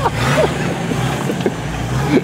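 Off-road 4x4's engine running steadily under load as it climbs out of a deep muddy rut, a low drone whose pitch rises slightly near the start and then holds.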